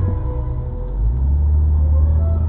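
Slow ambient background music of long held organ-like notes, its low notes moving to a new chord about halfway through.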